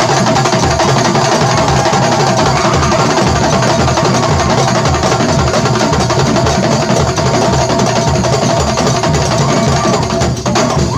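Kuntulan percussion ensemble playing fast, dense interlocking rhythms on terbang frame drums and kendang hand drums, with deep bass drum strokes underneath.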